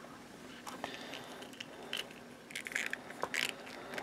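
Faint, scattered clicks and light scrapes of something being handled, thickest in the second half.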